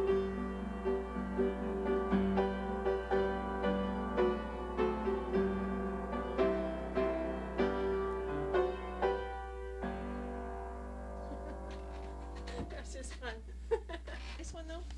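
Upright piano played from sheet music: a flowing accompaniment part of chords and broken notes, whose last chord rings out and fades from about ten seconds in. A voice starts to talk near the end.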